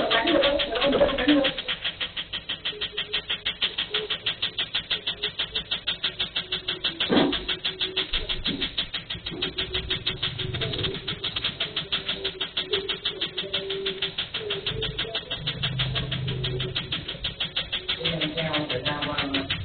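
Tattoo-removal laser firing a steady, rapid train of pulses, each a sharp snap, several a second. A single louder knock comes about seven seconds in.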